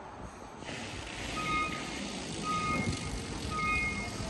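Short electronic beeps repeating about once a second, starting a little over a second in, over a steady low outdoor rumble.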